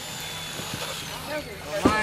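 A steady machine hum under faint background voices of people talking, with a louder laugh starting near the end.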